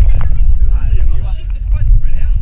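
Heavy, uneven low rumble of wind and body movement on a body-worn action camera's microphone as the wearer swings on an obstacle, with faint voices of people nearby underneath.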